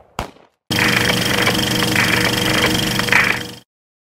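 Edited logo-sting sound effect: a loud, dense rapid rattle with a steady high tone and irregular brighter bursts, starting just under a second in and cutting off suddenly near the end.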